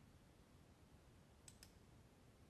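Near silence with a faint, quick pair of computer mouse clicks about one and a half seconds in.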